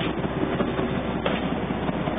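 The boat's Wichmann 3ACA three-cylinder two-stroke diesel running steadily under way at cruising speed, a fast, even engine beat.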